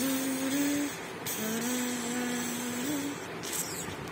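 A person humming two long held notes, the first ending about a second in and the second lasting about a second and a half, with a small step up in pitch at its end.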